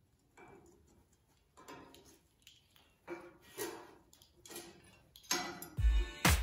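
Faint, scattered clicks and scrapes of a metal square and a marker being handled and drawn across sheet steel. Music with a heavy beat comes in near the end.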